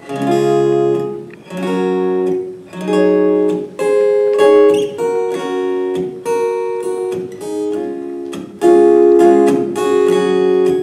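Steel-string acoustic guitar strumming an instrumental intro, starting suddenly: chords strummed and let ring about a second at a time with short breaks between them, the loudest strum coming near the end.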